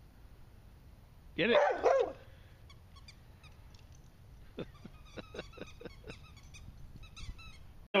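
Dog at play giving a quick run of short, high-pitched yips or barks, about three a second, starting a little past the middle.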